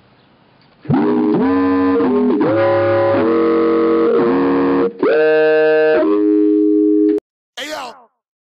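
Electronic keyboard synthesizer playing sustained chords, many of them sliding up into pitch as each one starts, from about a second in. It cuts off abruptly near the end, followed by a short, bright burst of sound.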